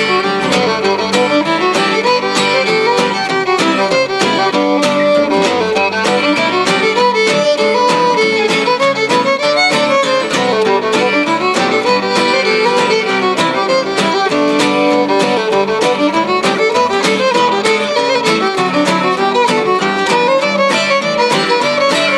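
Contest fiddling: a fiddle plays a continuous run of quick melody notes, backed by two acoustic guitars strumming rhythm chords.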